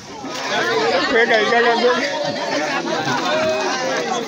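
Many children's voices talking and calling out at once, an excited babble.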